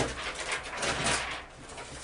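Clear plastic transfer mask film (high-tack transfer tape) crinkling and rustling as it is handled and flexed, beginning with a sharp snap and quietening near the end.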